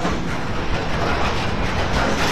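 A train running on the rails, a steady even noise with no pitch to it.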